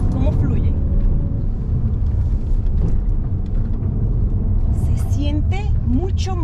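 Mazda 3 Turbo hatchback's 2.5-litre turbocharged four-cylinder engine and its tyres on the road, heard from inside the cabin as the car is driven hard through a lap; a steady low rumble.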